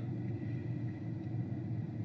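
Low, steady rumble of a car, heard from inside its cabin.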